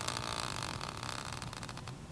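A hand-spun team-logo prize wheel whirring on its metal stand. The sound slowly fades as the wheel loses speed.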